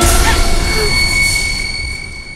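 A sudden rush of noise with a low rumble, then a high, steady ringing tone that slowly fades away: a dramatic film sound effect.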